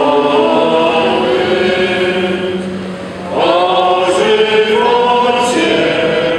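A small group of people singing a religious song together in unison, one phrase fading about three seconds in before the next begins.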